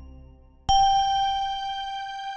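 Roland Atelier AT-900 organ playing a single high bell-like note that starts suddenly about two-thirds of a second in and rings on, slowly fading, after the tail of the previous chord dies away.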